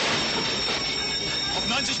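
A steady high-pitched squeal over a dense rushing noise, with a man's voice breaking in near the end.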